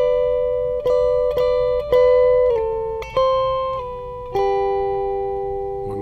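Telecaster-style electric guitar with a clean tone playing a country-style lick in two-note intervals high on the neck. It is picked lightly with even down strokes: a few repeated intervals, then slurs down to lower ones, the last ringing out.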